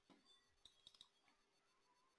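Near silence with a few faint, short clicks in the middle.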